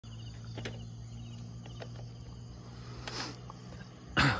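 Faint insects chirping in short high trills over a steady low hum, with a few soft clicks and a brief hiss about three seconds in.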